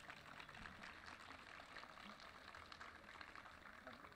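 Faint applause from an audience: a dense, irregular patter of hand claps at the end of a violin piece.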